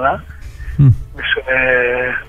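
Speech only: a man's voice, with a short low falling sound about a second in, then a long drawn-out syllable held at one pitch.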